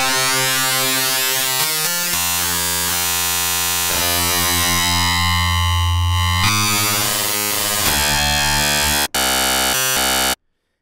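Xfer Serum software synthesizer sounding one held note: a sine wave frequency-modulated by a second wavetable oscillator. The buzzy, distorted tone is reshaped every second or two as the oscillator's warp amount is swept, and it cuts out for a moment near the end.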